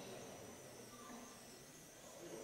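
Near silence: faint room tone with a thin steady high whine and a faint murmur.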